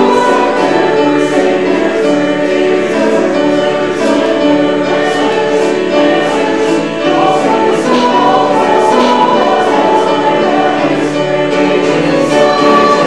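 A group of voices singing a hymn together in held, sustained notes.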